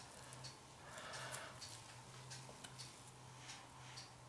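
Faint puffs of breath blown through a straw onto wet acrylic paint to push the paint out into petals, with soft scattered clicks.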